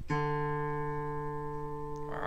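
A single note picked on an open string of a Les Paul Custom electric guitar, played clean, struck once just after the start and left to ring and fade slowly.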